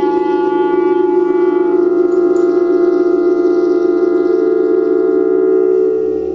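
Clarinet holding one long, steady note, its upper overtones fading about one to two seconds in.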